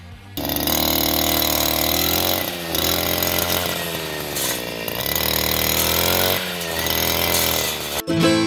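Backpack two-stroke brush cutter fitted with a homemade saw-blade tiller, running at high revs. Its pitch drops about three times and picks back up as the blade bites into the soil and grass.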